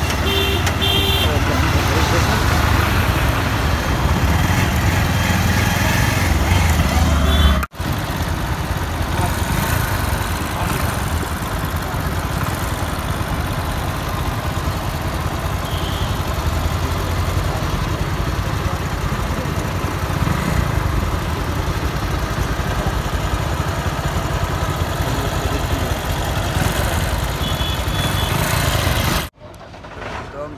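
Motorcycle riding through traffic: a steady rush of wind on the microphone over a low engine rumble. A horn gives three quick toots at the start, with short toots again near the end.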